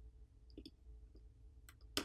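Faint, scattered small clicks of a metal spudger tip on a smartphone's main board as it pops off the coaxial antenna cable connectors, with a sharper click at the end.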